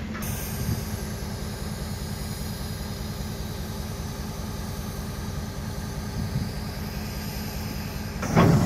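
A train of empty freight wagons rolling steadily past at close range: the continuous rumble of the wagons' wheels running over the rails.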